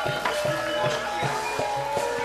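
Live Javanese gamelan music: struck metal keys ringing on held notes over a steady run of low hand-drum strokes.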